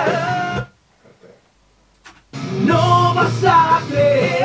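Rock song recording with a sung vocal over electric guitar: a held, wavering sung note breaks off abruptly, about a second and a half of near silence follows with a faint click, then the song starts again with singing.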